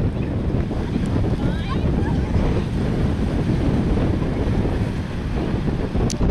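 Steady wind buffeting the camera microphone with a low rumble, over the wash of small breaking ocean waves on the beach.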